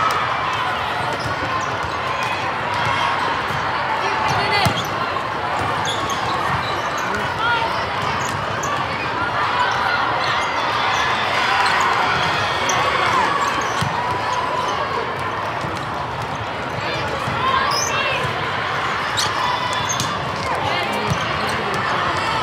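Steady din of many overlapping voices from players and spectators during a volleyball rally, with scattered sharp thumps of volleyballs being hit and bouncing.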